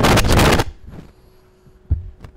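Microphone handling noise: a loud crackling rustle for about half a second, then a single low thump near the end as the microphone is knocked or gripped.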